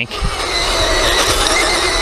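SG1203 Ripsaw RC tank driving over gravel: a steady whine from its electric drive motors over the rattle of its tracks.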